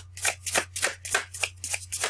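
A tarot deck being shuffled overhand in the hands: a quick, even run of soft card slaps, about six a second.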